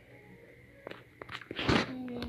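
A few light taps about a second in, then a short rush of noise near the end, the loudest moment: fingers tapping a tablet touchscreen and handling noise close to the device's microphone.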